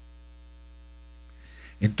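Low, steady electrical mains hum, buzzy with many overtones, from the recording's audio chain. Speech starts again right at the end.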